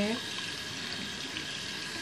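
Bathroom sink tap running steadily, water pouring into the basin.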